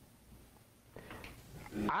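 Near silence of room tone for a pause in speech, with a few faint soft sounds, then a man's voice starts speaking near the end.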